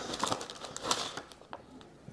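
Paper leaflets and cardboard packaging being handled: light rustling with a few soft clicks, one a little louder about a second in.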